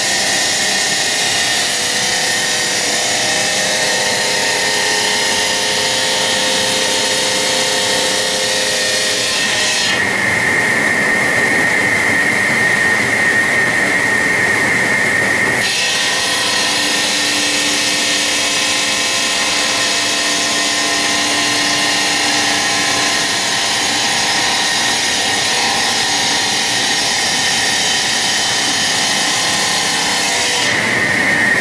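Diamond circular saw blades of an automatic stone profiling machine cutting stone under water spray: a loud, steady grinding whine with a high sustained tone over the motor's run. The sound changes abruptly about ten seconds in and again near sixteen seconds.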